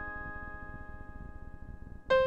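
Solo piano notes held with the pedal and slowly dying away at a pause in the music, with no new notes struck.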